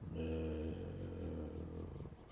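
A man's voice holding a drawn-out hesitation sound at a steady low pitch for nearly two seconds.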